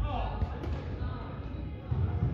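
Sports-hall game noise: players' voices calling out over repeated thuds of running feet and a ball on the hall floor, echoing in the large hall.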